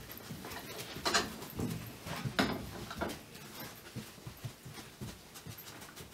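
A dog breathing hard and sniffing as it searches a room for a scent, with a few sharp sniffs in the first three seconds and softer ticks and taps after.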